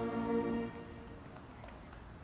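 The last long held chord of the flag-raising song, sung by a crowd of schoolchildren over music from the outdoor loudspeakers, ending about two-thirds of a second in. After it comes a low murmur with a few faint taps.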